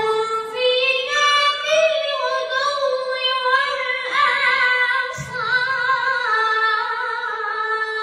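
A boy reciting the Quran in a high voice, in a melodic tajweed style, drawing out long wavering notes. There is a short break about five seconds in.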